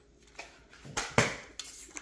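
Flat mop pulled up through the plastic wringer slot of a mop bucket's dry chamber, which squeezes water out of the pad, then set down on the floor: a handful of short knocks and scrapes, loudest just after a second in.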